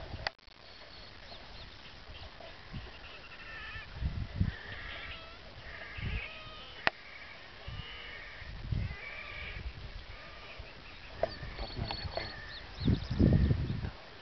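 Geese calling over and over, many short pitched calls, thickest in the middle of the stretch. A few low thumps on the microphone come through, the loudest near the end.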